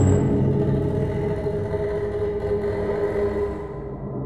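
Deep rumbling drone with several held tones from an animated film's score and sound design, loud at first and fading out near the end.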